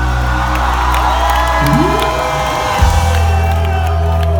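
Live rock band playing through a large outdoor PA, with held chords and gliding guitar notes, and a crowd cheering and whooping over the music. The bass shifts to a new note with a sharp hit near the end.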